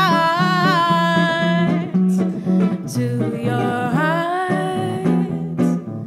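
Female jazz vocalist holding long, wavering sung notes over plucked jazz guitar accompaniment, with a short gap in the voice about halfway through.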